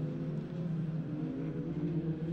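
Engines of several racing pickup trucks running together at race pace, their overlapping notes shifting slightly in pitch.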